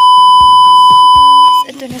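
A loud, steady test-tone beep that goes with a colour-bars test card, lasting about a second and a half and cutting off suddenly. Background music with a beat carries on faintly beneath it, and a woman starts speaking just before the end.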